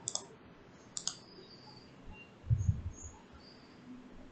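Two computer mouse clicks, about a second apart, followed by a short, low muffled rumble about two and a half seconds in, the loudest sound here.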